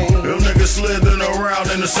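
Hip hop track: a male voice rapping over a beat with heavy bass and regular drum hits.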